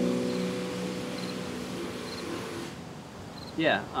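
Final strummed chord on an acoustic guitar ringing out and slowly fading away.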